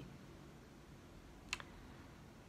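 Quiet room tone with a faint low hum, broken by a single short click about one and a half seconds in.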